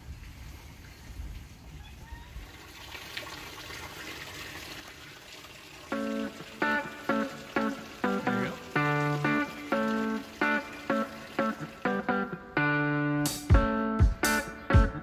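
Faint outdoor background for several seconds. About six seconds in, background music with picked guitar notes begins, and a beat joins near the end.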